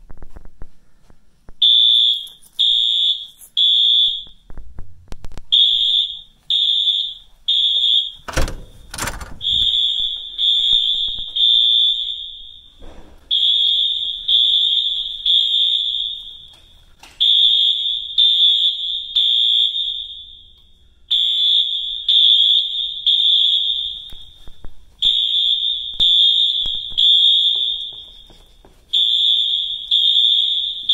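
School fire alarm horns sounding the evacuation signal: a high-pitched electronic tone beeping in groups of three, the temporal-three pattern, starting a little under two seconds in and repeating steadily. A loud thump about eight seconds in.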